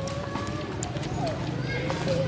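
Indistinct background voices, with a few faint thin whistling calls and scattered light clicks.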